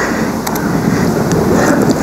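Steady rush of wind buffeting and helicopter noise on a phone's microphone, from a video shot aboard a doorless helicopter and played back over a hall's loudspeakers.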